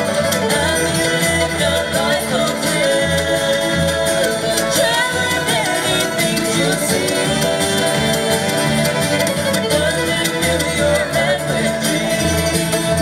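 Live bluegrass band playing a song, with fiddle, acoustic guitar and upright bass, and two voices singing together in harmony.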